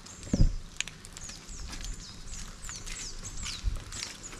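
A bird calling over and over, short high whistles that each slide down in pitch, a few a second. About half a second in there is one loud low thump.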